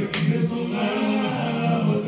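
Tongan choral song: a group of voices singing held notes. There is a single sharp hit just after the start.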